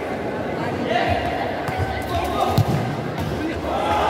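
Spectators and players shouting and chattering in a reverberant sports hall, with a single thump about two and a half seconds in.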